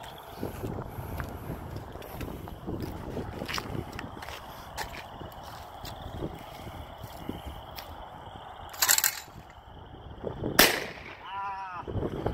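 A single shot from a New England Firearms 28 gauge single-shot break-action shotgun, one sharp crack with a short echoing tail about ten and a half seconds in. About a second and a half earlier comes a short loud noise of another kind.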